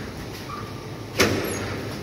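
Automatic bread panning machine running with a steady low hum, and a single sharp clunk from its mechanism a little over a second in that dies away over about half a second.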